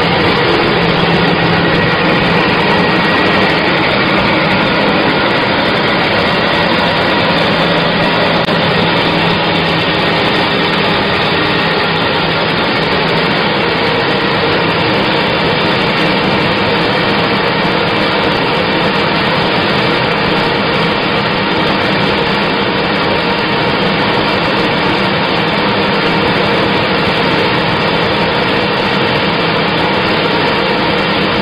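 Kraft paper slitting and rewinding machine running steadily, a loud, even mechanical din as a wide paper roll is cut into narrow strips, with a low hum during roughly the first third.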